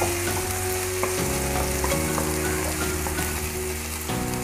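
Chopped onion and tomato sizzling steadily in oil in a nonstick frying pan while a wooden spatula stirs them.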